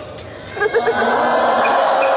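A woman's voice through a stage microphone: a quick quavering run of short notes, then one long held note.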